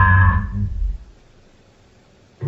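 Necrophonic ghost-box app audio played back at half speed: a low, distorted, warbling sound with steady tones that fades out about a second in, leaving only quiet room noise.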